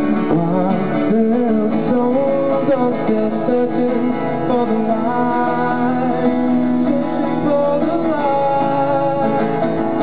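Acoustic guitar strummed live under a harmonica played from a neck holder, carrying the melody in held and bending notes.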